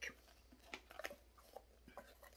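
Near silence with a few faint clicks and ticks of fingers handling a small decorative sign, working a loose piece back into place.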